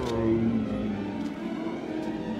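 Film score holding low, sustained orchestral notes over a low rumble as the crash of the troll's heavy fall dies away, with a faint clatter of debris about a second in.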